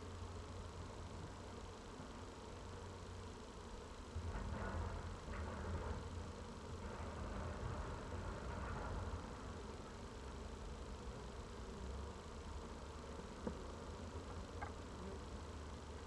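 Honey bees buzzing faintly as they fly around an open hive box, louder for a few seconds in the middle, over a low outdoor rumble. Two small clicks near the end.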